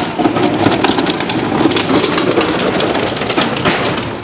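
Rain pattering on an umbrella close overhead in dense, irregular taps, over the low running of a heavy diesel truck's engine.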